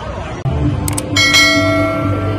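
Subscribe-button sound effect: two quick mouse clicks, then a bell chime ringing out and slowly fading.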